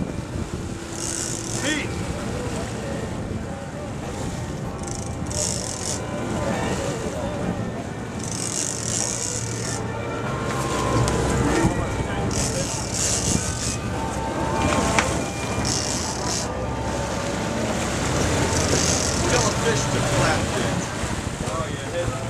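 Sportfishing boat's engines running with a steady low hum, with repeated bursts of water splashing and spraying at the stern and wind on the microphone.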